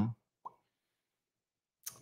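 A pause in a man's talk: his drawn-out "um" trails off, a single small mouth click sounds about half a second in, then near silence until a quick breath just before he speaks again.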